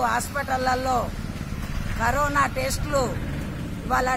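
A woman speaking in two short phrases, with a low steady rumble underneath.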